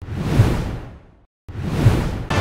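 Two whoosh sound effects for an animated logo reveal. The first hits at once and fades away over about a second. After a brief silence the second swells to a hit near the end.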